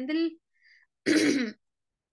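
A person clearing their throat once, a short rasping sound about a second in.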